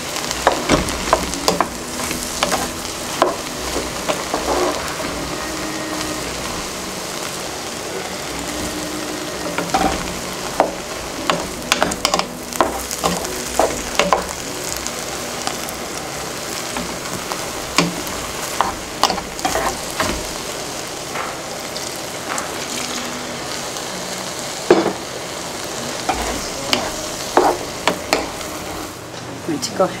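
Wooden spoon stirring bread-cube stuffing in a hot skillet as vegetable stock is poured in, with a steady sizzle and frequent short knocks and scrapes of the spoon against the pan.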